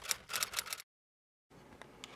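Typing sound effect: a quick run of about eight sharp clicks that stops just under a second in. Faint room tone follows.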